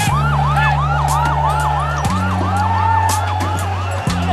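A fast-warbling siren yelp, rising and falling about three times a second, laid over a synthesized intro theme with sustained bass notes that shift about halfway through and sharp percussion hits.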